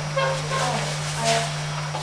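Faint, indistinct speech away from the microphone over a steady low hum, with a short breathy or rustling noise about a second in.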